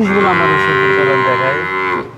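Cattle mooing: one long moo held on a steady pitch for about two seconds, dropping slightly at the end.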